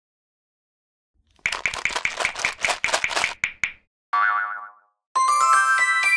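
Intro jingle sound effects: after a second of silence, a quick run of rattling hits, then a single boing, then a bright chime that climbs in steps and rings on.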